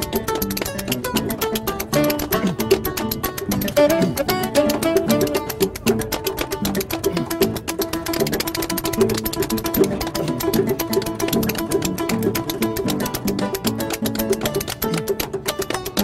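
Instrumental folk music: a pair of metal spoons clicking a fast, busy rhythm against a hand and thigh, over plucked harp and double bass.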